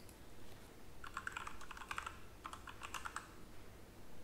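Faint typing on a computer keyboard: two short runs of quick keystrokes, one about a second in and another about two and a half seconds in.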